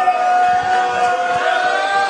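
One person's voice holding a single long yelled note, rising slightly in pitch, amid a wrestling crowd.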